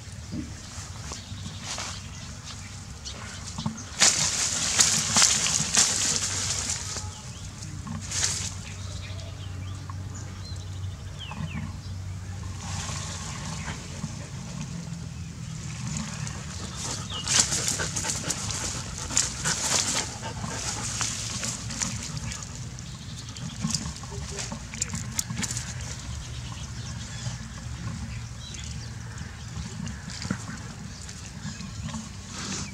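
A dog rooting and digging at a burrow in dry grass and loose dirt: irregular bursts of scratching and rustling, loudest about four to six seconds in and again around seventeen to twenty seconds, over a low steady hum.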